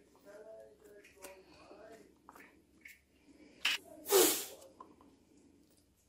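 Soft handling sounds of pomegranate arils being picked from the peel into a bowl, with small ticks, over faint low murmuring in the first two seconds. A brief sharp hiss about four seconds in is the loudest sound.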